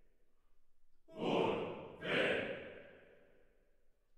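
Tenors and basses of a choir shouting in unison at no set pitch, like battle shouts: two short shouts about a second apart, each dying away in the studio's reverberation.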